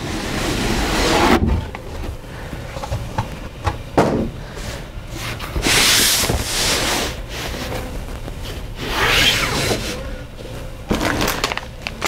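A cardboard kit box being opened and its contents handled: the cardboard scrapes and rubs, plastic parts bags rustle in several swells, and there are a few light knocks.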